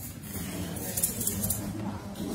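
Low murmur and shuffling of a congregation getting to its feet in a large church, with a few brief, faint high rustles about a second in.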